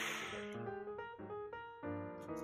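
Background piano music playing sustained notes, with a brief soft hiss at the very start.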